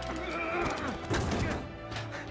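Film action soundtrack: orchestral score with a wavering high note in the first second and several sharp hits, some just after a second in, from the fistfight.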